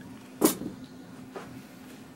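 A single sharp knock about half a second in, then a fainter click about a second later, over a steady low hum.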